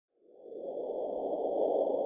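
Logo-intro whoosh sound effect: a low rushing noise that swells up out of silence and grows louder, with faint steady high tones ringing above it.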